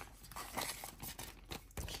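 Soft rustling of a paper sticker sheet and clear plastic binder sleeve as the sheet is handled and slid into the pocket page, in a few brief bursts.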